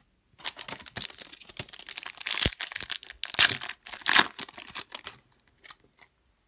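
Plastic trading-card pack wrapper being torn open and crinkled by hand: a dense crinkling rustle from about half a second in to about five seconds, with a few louder tearing bursts.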